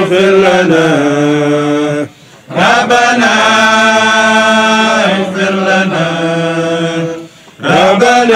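A man chanting a Sufi dhikr litany solo in long, held melodic phrases, stopping briefly for breath about two seconds in and again near the end.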